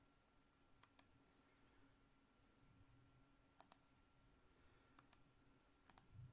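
Faint computer mouse double-clicks: four pairs of quick clicks spread over a few seconds while editing a document.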